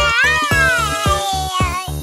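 Cartoon baby kitten's voice crying in a long meow-like wail that rises and then falls, over children's background music with a steady beat.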